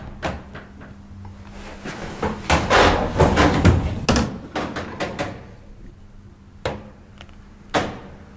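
A door being handled, with sharp clicks and knocks and a louder rattling, clattering stretch from about two and a half to four seconds in, then single knocks near the end, over a steady low hum.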